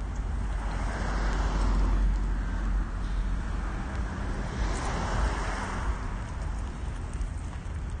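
Two cars passing by on the road, each a swell of tyre and engine noise that rises and fades, the first about a second in and the second around five seconds in, over a steady low rumble.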